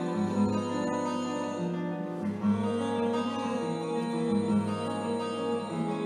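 Live solo classical guitar playing a slow instrumental piece: plucked melody notes over low bass notes, with one note held for several seconds in the middle.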